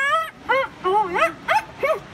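Conch shell blown as a horn by an unpractised player: a string of about six short, wavering honks that slide up and down in pitch.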